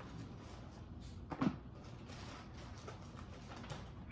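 Faint handling sounds as papers and things are moved about on a table, with one brief knock about a second and a half in.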